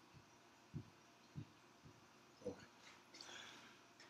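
Near silence: a few faint soft knocks and, near the end, a faint scratching as a marker writes on a whiteboard.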